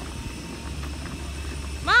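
A steady low background rumble, with no distinct sound standing out.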